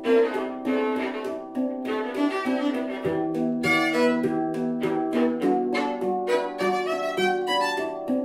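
Schlagwerk Equinox handpan played with quick, steady hand taps under a bowed violin holding long notes, the two improvising together, both tuned to 432 Hz.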